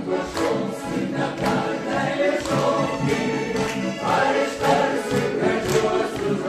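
A mixed choir of men's and women's voices sings a folk-style song, accompanied by two accordions. A hand-held jingle ring is shaken on the beat about once a second.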